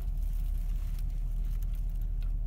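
Steady low rumble of a parked car's engine idling, heard from inside the cabin, with a few faint crackles.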